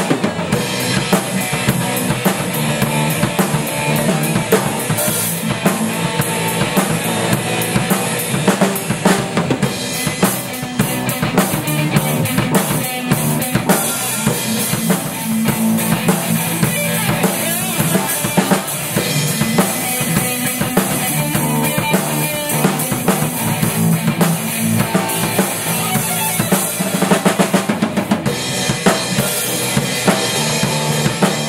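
Three-piece rock band playing an original instrumental riff on drum kit, electric bass and amplified electric guitar. Loud, with dense drum hits throughout.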